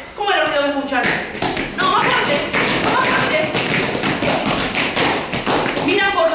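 Quick, irregular tapping from many small hands, mixed with children's voices, starting about a second in: a group of children making the noise of something approaching in a story being read aloud.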